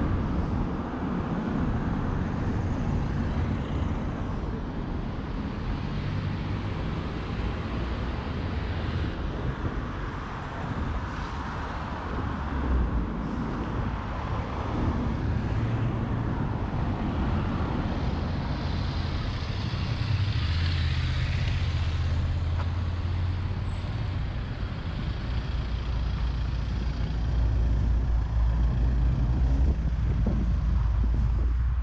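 Street traffic: the continuous engine rumble and tyre noise of passing road vehicles, with a deep engine rumble growing louder near the end.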